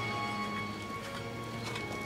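Hoofbeats of a cantering horse on arena sand, a few soft thuds from about half a second in, under background music with long held notes.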